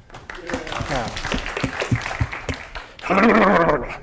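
Audience clapping and laughing, with scattered voices. About three seconds in, one loud voice gives a call with a wavering pitch.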